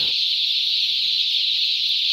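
Steady, dense high-pitched peeping of thousands of day-old chicks together, a continuous massed cheeping with no single call standing out.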